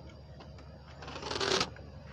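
A brief rustling noise about a second in, swelling over roughly half a second and then stopping sharply, over a faint low hum.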